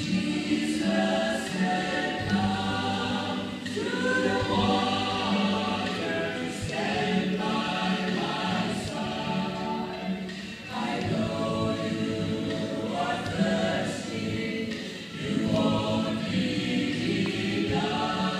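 Three women singing a sacred song together, the voices phrasing in long lines with short breaks about two-thirds of the way through and again near the end. A steady low instrumental accompaniment runs under the voices.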